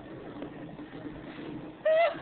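Faint muffled background for most of the stretch, then near the end a loud, wavering, high-pitched vocal call starts.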